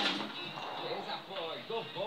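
Faint voices from a television show playing in the room.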